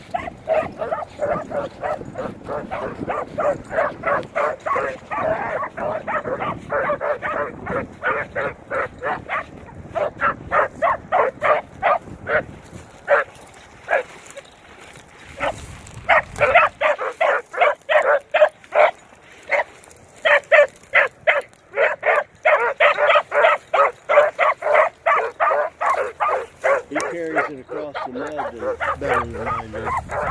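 Beagles giving tongue as they run a scent trail: a fast, steady string of short, high-pitched barks, about three to four a second, with a brief lull about halfway through.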